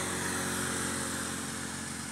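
A motorcycle engine running steadily on a nearby road, a low even hum that eases off slightly toward the end.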